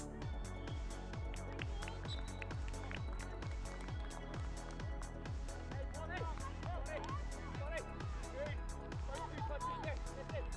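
Background electronic music with a steady kick drum at about two beats a second and ticking hi-hats.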